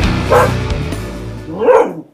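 Music with a dog barking over it: a bark about a third of a second in and another near the end, where the sound cuts off abruptly.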